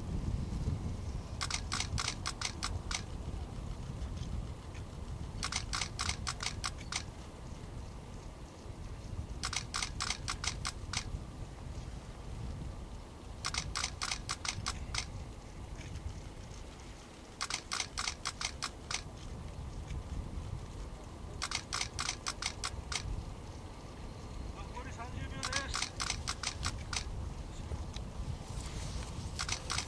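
Camera shutter firing in rapid bursts of clicks, each burst about a second and a half long and repeating every four seconds, over a low background rumble.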